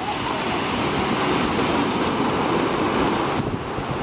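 Ocean surf breaking and washing up a beach of rounded cobbles in a steady rush, with wind on the microphone.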